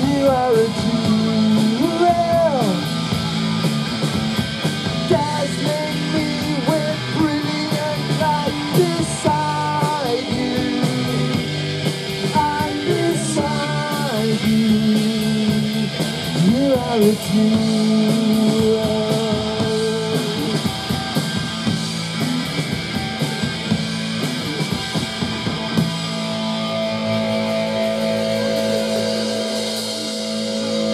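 Live punk rock band playing: electric guitar, bass guitar and drum kit, with a lead vocal singing over roughly the first half. Near the end the drumming stops and a steady chord is held.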